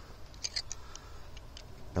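Several light metallic ticks, mostly in the first half, as slip-joint pliers grip and turn a screw extractor anti-clockwise in a snapped diesel injector bolt.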